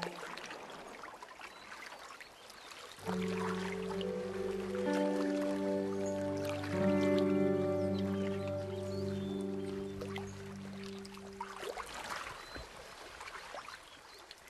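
Soundtrack music of long held chords, from about three seconds in until about twelve seconds, with faint splashing of a canoe paddle in the water before and after it.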